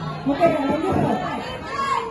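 Speech and chatter: several people talking at once, with a voice calling out "foto" at the start.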